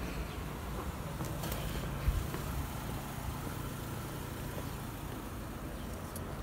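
A car engine idling nearby, a low steady hum, with a single thump about two seconds in.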